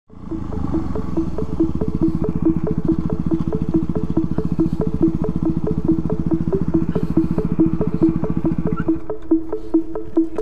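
A dirt bike's engine running at low speed, with background music and a steady beat laid over it; the low engine rumble drops away about nine seconds in.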